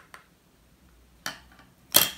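A small jar of loose eyeshadow pigment being handled while the powder won't come out: a few faint clicks, a short rustle about halfway through, and a sharp knock of the jar against a hard surface at the very end.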